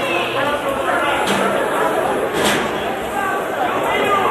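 Overlapping voices of people talking and calling out in a large hall, with a brief sharp burst of noise about two and a half seconds in.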